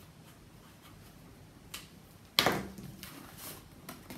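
Faint strokes of a felt-tip marker writing on paper, then a soft rustle of card as it is picked up.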